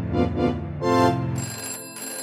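A short organ-like keyboard music cue ends, and a telephone starts ringing about a second and a half in, in short repeated bursts.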